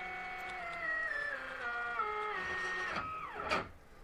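Stepper motors of a GRBL-controlled coil winder whining, the pitch stepping down several times as the feed rate changes, then gliding down and stopping about three and a half seconds in. During the run the geared stepper on the spindle had a little stall, which the owner puts down to the spindle and its cheap motor driver.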